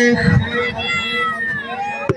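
A person's voice drawn out into one long, wavering high call with gliding pitch, which falls away near the end, after a few spoken words in the first half-second.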